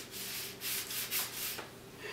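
ABS plastic trombone inner slide, its ends fitted with rubber O-rings, being pushed into the outer slide pipes: plastic rubbing and scraping against plastic in a few short strokes.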